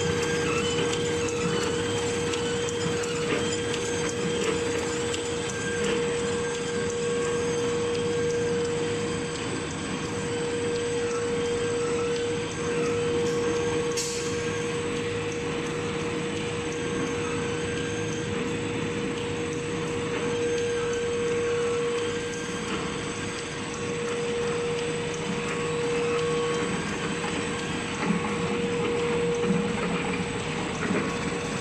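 L-fold dispenser napkin paper machine with two-colour printing running at speed: a steady mechanical clatter with a constant whine over it, and a single sharp tick about halfway through.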